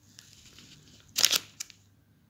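A short crackling rustle about a second in, then a single click, over a faint hiss.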